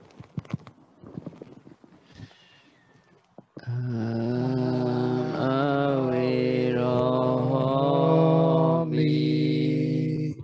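Soft clicks and rustling, then about three and a half seconds in a single male voice starts a long drawn-out chant: held notes that waver and bend in the middle and pause briefly near the end. It is a Buddhist monk chanting.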